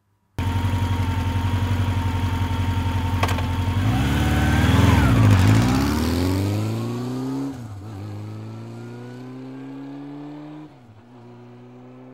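A motorcycle engine comes in suddenly, runs with a steady even beat for a few seconds, then is revved, loudest about five seconds in. It then accelerates with a rising pitch, dropping back sharply at gear changes about seven and a half and ten and a half seconds in.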